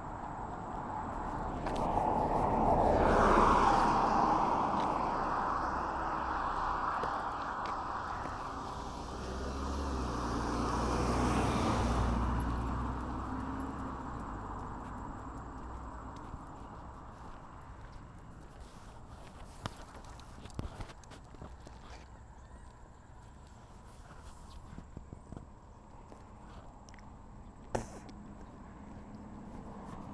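Road traffic passing close by: one vehicle swells up and fades, peaking about three seconds in, and a second, with a deep engine rumble, passes around eleven to twelve seconds in. After that there is a quieter stretch of distant road noise, with a few small knocks near the end.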